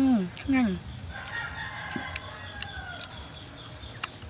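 A rooster crowing once in the background, one long call of about two seconds that sags slightly in pitch toward its end. At the start, louder than the crow, a woman's voice says a short word twice.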